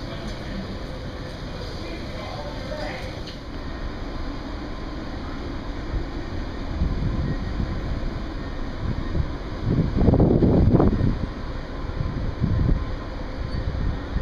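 Wind buffeting the camera's microphone on an open ship deck: a low rumble with irregular gusts that build after the middle and are strongest about ten seconds in.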